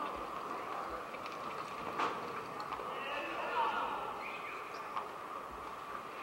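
Reining horse loping on the dirt of an arena, its hoofbeats under a steady hum of arena background noise, with a few sharp clicks.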